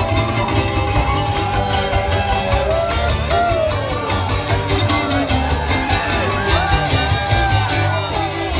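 Bluegrass string band playing live: fiddle sliding between notes over strummed guitar and mandolin, with a steady low beat underneath. The fiddle's slides grow busier about three seconds in.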